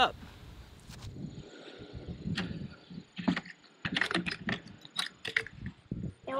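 Scattered clicks and light knocks of hands handling hard plastic items, the chainsaw and fuel containers on a plastic truck-bed liner: a few sharp taps spread over several seconds, in two small clusters near the middle and toward the end.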